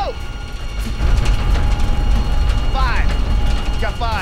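Mechanical rumble of the motor-driven moving wall and its track, louder from about a second in. Two short shouts come around three seconds in and again at the end.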